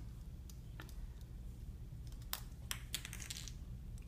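A few light, irregular clicks and taps of a metal loom hook against a plastic rubber-band loom and its pegs as rubber bands are looped and released.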